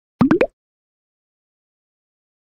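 Three quick cartoon pop sound effects in a rising sequence, each a short upward-gliding plop pitched higher than the one before, all within about a third of a second.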